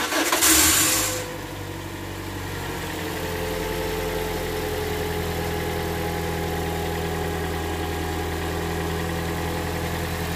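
2011 Toyota Corolla inline-four petrol engine starting: it catches at once and flares loudly for about a second, then settles into a steady, even idle. It runs smoothly with no unusual noises.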